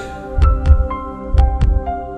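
Heartbeat sound effect, a double thump about once a second, under soft background music with chiming notes.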